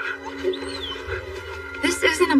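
An animated wolf-like creature whimpering and whining softly over held notes of film score music. A high whine rises and falls about half a second in, and louder animal calls start near the end.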